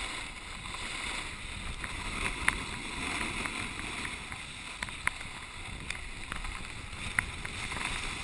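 Snowboard sliding down packed snow, heard through a sealed action-camera housing: a steady muffled hiss of the board on the snow with wind, broken by a few sharp clicks.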